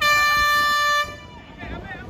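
An air horn sounds one steady blast of about a second, a single held note rich in overtones that cuts off suddenly.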